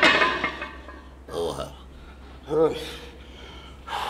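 A man breathing hard and groaning after a heavy set of machine chest flies: a loud breathy exhale at the start, then two short strained groans.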